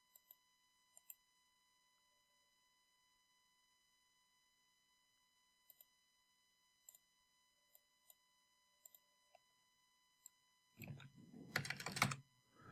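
Near silence broken by faint, scattered single clicks of a computer mouse and keyboard, then a denser, louder run of keyboard clicks near the end.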